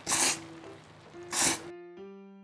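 A person slurping thick yakisoba noodles twice, two short hissing sucks about a second and a half apart, over quiet background music.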